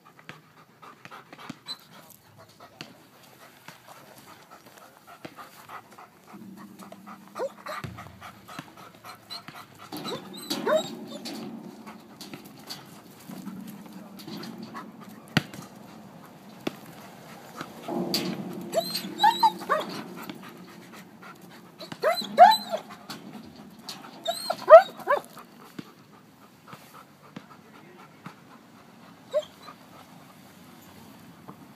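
German Shepherd panting, then whining in several short high-pitched cries that rise and fall, loudest a little after the middle. A low steady hum runs underneath through much of the middle.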